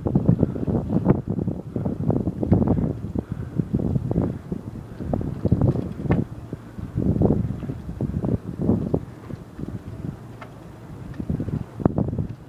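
Wind buffeting the microphone in loud, irregular gusts, easing briefly near the end.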